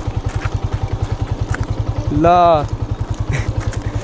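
Motorcycle engine running at low revs, a steady, evenly paced low pulsing. A short call from a voice cuts in about two seconds in.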